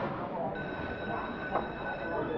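A steady high-pitched tone with several even overtones starts about half a second in and holds, over a low background murmur.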